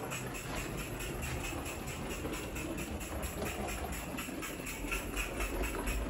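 Small live-steam model locomotive, an Archangel Sergeant Murphy, running with a quick, even chuffing exhaust over a steady steam hiss.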